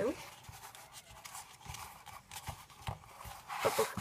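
Paper and cardboard being handled by hand on a table: soft rustling with a few light taps, and a louder rustle near the end.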